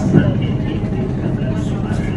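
Steady engine rumble of a river cruise boat under way, with people's voices chattering over it.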